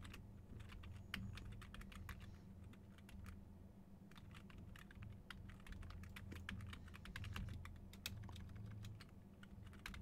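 Faint typing on a computer keyboard: a run of irregular keystroke clicks, over a steady low hum.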